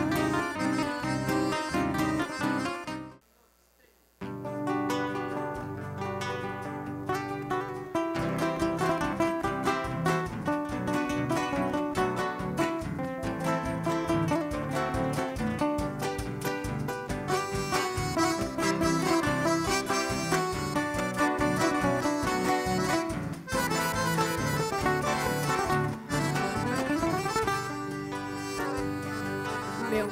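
Regional gaúcho folk music: acoustic guitar picking with accordion, playing an instrumental introduction without singing. About three seconds in, the music cuts out for about a second, then the new piece starts.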